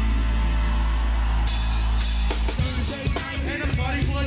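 Live band music: a held low bass chord, then a cymbal comes in about a second and a half in, and the full drum-kit beat drops in about a second later.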